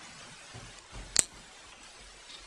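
A single sharp click a little after a second in, just after a soft low thump, against quiet room tone.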